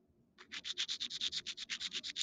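A mineral sample rubbed rapidly back and forth across a streak plate in a streak test: a quick run of scraping strokes, about ten a second, starting about half a second in.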